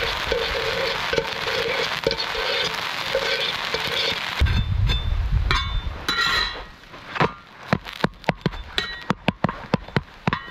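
Pancake batter sizzling steadily on a hot steel campfire griddle plate, which the cook thinks is too hot. After a sudden change, a metal spatula scrapes and clinks against the steel plate in a run of short sharp clicks through the second half.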